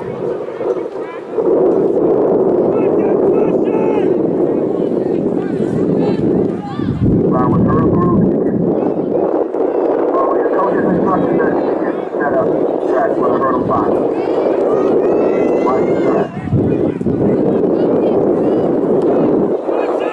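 Indistinct chatter of many spectators in the bleachers close to the microphone, a steady babble of overlapping voices that gets louder about a second and a half in.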